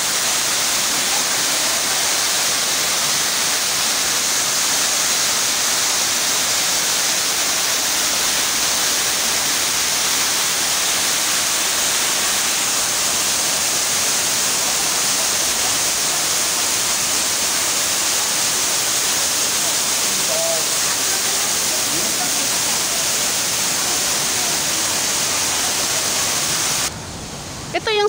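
Man-made waterfall pouring over rocks into a shallow pool: a steady, loud rush of falling water. It drops away sharply about a second before the end.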